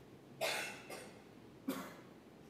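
A person coughing twice: a longer cough about half a second in and a shorter one near the end.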